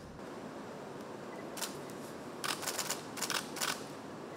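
Camera shutters firing in quick bursts, several rapid clicks at a time, over a steady room hiss.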